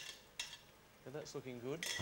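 Wooden spatula scraping against a bowl and pan while pasta is mixed: two short scrapes about half a second apart. A low voice murmurs in the second half.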